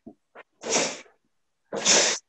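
A man's breath forced out through the mouth in two short, sharp hissing bursts about a second apart.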